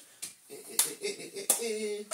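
Three sharp clicks, each about two-thirds of a second apart, from plastic vacuum-cleaner parts being handled and fitted together, with a short hum of a voice near the end.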